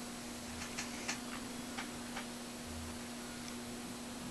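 A handful of short, faint ticks in the first half, over a steady hiss and a low, even hum.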